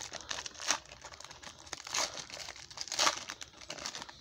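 Foil wrapper of a trading-card pack crinkling and tearing as it is opened by hand, with louder crackles about two and three seconds in.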